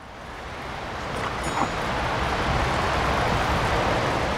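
Street traffic on a wet road: a steady tyre hiss that grows louder over about three seconds and then holds.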